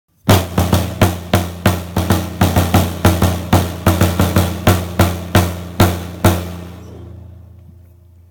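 Vintage 1960s John Grey 'Pancake' piccolo snare drum struck with a wooden drumstick, a run of about twenty hits at three or four a second, each with a low ring that carries on under the next. The strokes stop about six seconds in and the ring dies away slowly. The drum is tuned a little low and needs a touch of tuning.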